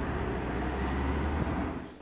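Road and engine noise of a moving car heard from inside the cabin: a steady low rumble that fades near the end.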